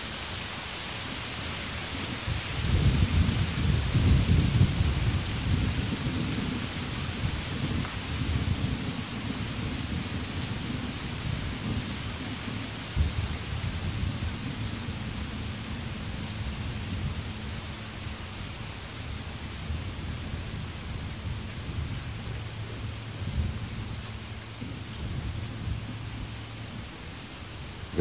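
A low rumble that swells suddenly about three seconds in and dies away slowly over the next twenty seconds. A steady low hum joins it midway, over a faint steady high hiss.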